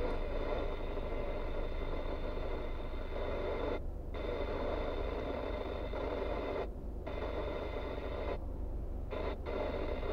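Steady low hum of a car idling, heard from inside the cabin, with a fainter hiss that cuts out briefly three or four times.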